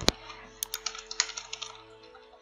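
Computer keyboard typing: a sharp click just after the start, then scattered lighter key taps.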